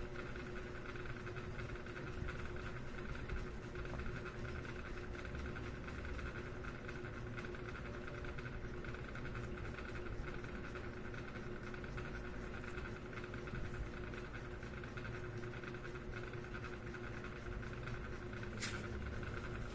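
Steady room hum with a constant low tone, broken by a few faint clicks.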